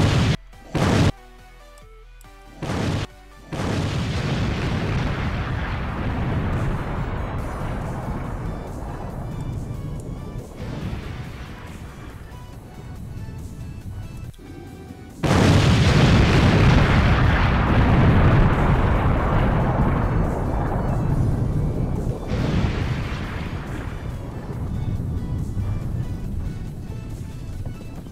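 A stock explosion sound effect, played back twice. Each time a sudden blast is followed by a long rumbling fade lasting about ten seconds: the first about three and a half seconds in, the second, louder, about fifteen seconds in.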